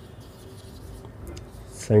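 Marker pen writing on a whiteboard: faint scratching strokes as letters are written. A man's voice begins right at the end.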